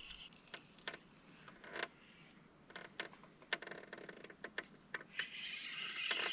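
Faint, irregular clicks and small knocks of fishing tackle being handled in a kayak, a few a second, with a faint hiss of outdoor ambience rising near the end.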